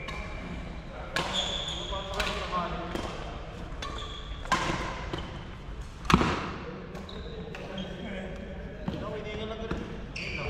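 Badminton rackets striking a shuttlecock during a rally, several sharp hits with the loudest crack about six seconds in. Short high squeaks of court shoes on the floor come between the hits, echoing in a large sports hall.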